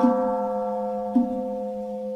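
A steady held musical note with evenly spaced overtones over a continuous low drone, fading slowly in the accompaniment of Buddhist chanting. A faint knock comes about a second in.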